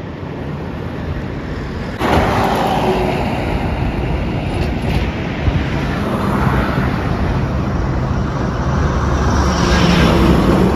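Road traffic noise on a highway bridge: a steady noise of passing vehicles that steps up suddenly about two seconds in and stays loud.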